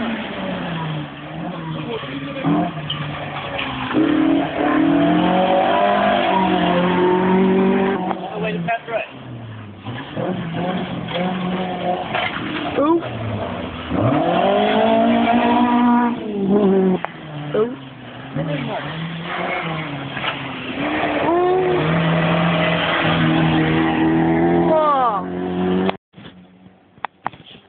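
Historic rally car engine on a gravel forest stage, revving hard with its pitch repeatedly climbing and dropping through gear changes and lifts, rising and falling as it passes.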